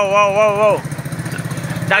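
A child's drawn-out, wavering vocal sound, imitating a dog, ends under a second in. Under it a small engine idles with a fast, even pulse, plain once the voice stops.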